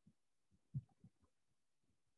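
Faint, muffled keystrokes on a computer keyboard typing a password, about five soft thumps in the first second and a quarter, the room otherwise near silent.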